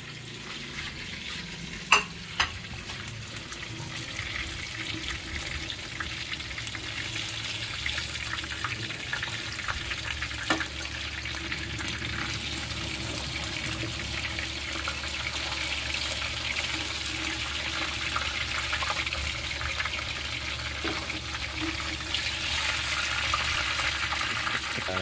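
Food sizzling in hot oil in a wok, a steady frying hiss that grows slowly louder. A few sharp clicks from the slotted spatula against the pan, two about two seconds in and one near the middle.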